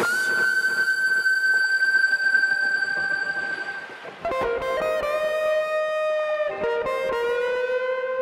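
Electric guitar lead with effects, playing long sustained notes: a high note held for about four seconds, then after a short break a lower held note, with a slow upward bend near the end.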